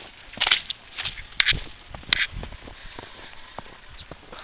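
Footsteps in fresh snow: three sharp steps in the first couple of seconds, roughly a second apart, with softer low thumps after.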